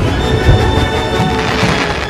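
Background music over firework sound effects: a boom about half a second in, then dense crackling.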